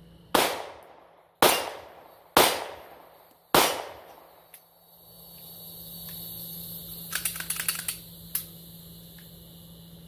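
Four 9mm pistol shots about a second apart, each trailing off in echo. About three seconds after the last shot, a quick run of light metallic clicks comes from the pistol being handled.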